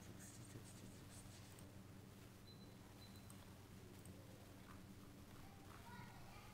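Near silence: a steady low electrical hum of room tone, with a few faint clicks of a computer mouse in the first second and a half as folders are opened.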